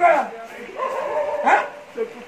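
A man's voice imitating a dog barking: a loud bark at the start and another about a second and a half later, with a drawn-out vocal sound between them.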